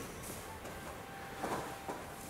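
Quiet room tone with a couple of soft brushes of heavy cotton judogi cloth about one and a half seconds in, as judo grips on sleeve and lapel are shifted.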